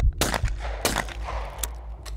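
Two shots from an over-under competition shotgun, about two-thirds of a second apart: a skeet double, one shot at each of the two clay targets thrown together.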